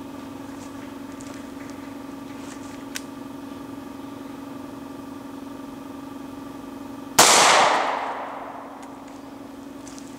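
A single shot from a Taurus Model 605 snub-nose revolver firing a .38 Special +P 135-grain Speer Gold Dot hollow point, about seven seconds in, its report dying away over about a second and a half. A steady low hum runs underneath.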